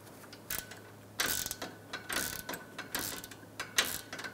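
Hand ratchet clicking in several short spells, starting about a second in, as it runs in a small bolt.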